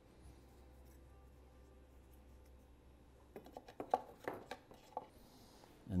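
Light metal clicks and taps, a quick cluster starting a little past halfway, as thin sheet-metal rework box brackets are worked into the edges of a hole cut in drywall.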